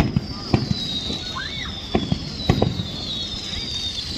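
Fireworks display: shells bursting in sharp bangs at irregular intervals, several high whistles overlapping, each gliding slowly down in pitch.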